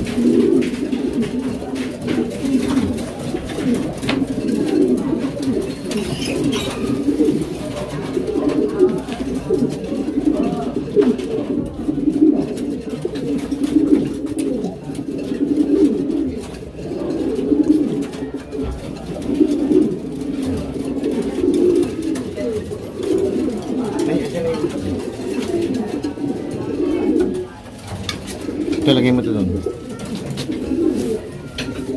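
Many domestic pigeons cooing continuously, their calls overlapping into a steady chorus, with a brief lull near the end.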